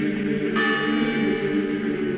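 A bell struck once about half a second in, its many overtones ringing and fading over a sustained low choral drone.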